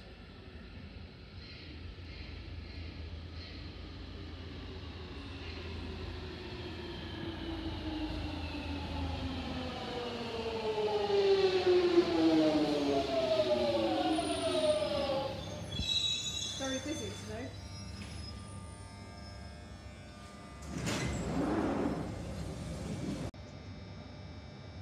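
London Underground Jubilee line 1996 Stock train arriving at a platform, its motor whine falling in pitch in several tones as it brakes, loudest about halfway through. A short burst of noise comes near the end as it draws to a stop.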